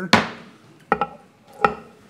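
A wooden gavel struck three times to call the meeting to order. The first strike is the loudest and rings on, and two more knocks follow about a second in and near the end.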